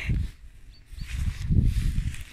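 Deep rumbling thumps from a handheld camera being jostled while walking uphill, in two swells: briefly at the start and again for the last half-second or so.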